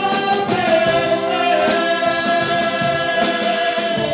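A man and a woman singing an Italian pop ballad as a duet, holding one long high note together with a slight vibrato, over a wind band's accompaniment.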